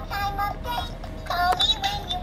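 Baby's electronic toy phone playing a short sung tune in a high synthetic voice, set off by its keypad buttons being pressed.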